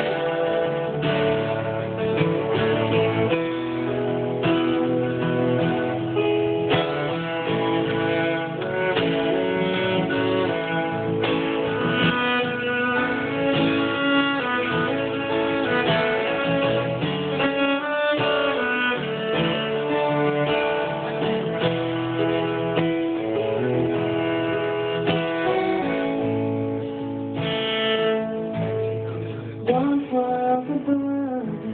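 Bowed cello and acoustic guitar playing together in an instrumental passage of a song, without singing.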